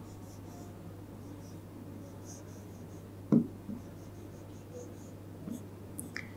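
Faint scratching and tapping of a stylus writing on an interactive display's screen, with one short knock a little past halfway, over a low steady hum.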